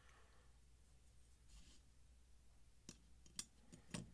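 Faint handling of metal folding-knife parts during reassembly: a soft rustle, then a few sharp little clicks as the blade and handle scale are fitted together near the end.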